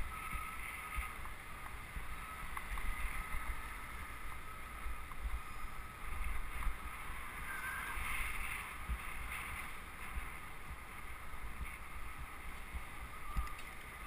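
Wind buffeting the microphone of a camera riding on a moving bicycle: a steady, uneven low rumble with road noise underneath.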